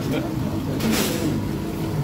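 Busy kitchen stove noise: a steady low rumble of open gas burners under pans of pasta, with voices in the background and a brief hiss about a second in.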